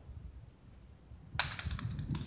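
A jai alai pelota striking the fronton with one sharp, loud crack about one and a half seconds in, followed by a few quick, fainter clicks.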